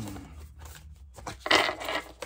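Cards being handled, with scattered small scrapes and clicks and a louder rustle about one and a half seconds in.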